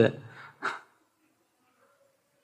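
A man's speaking voice trails off into a pause, with one brief sound from him just over half a second in, then near silence.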